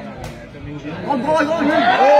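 Spectators chattering, with one sharp click just after the start. The voices grow louder about a second in.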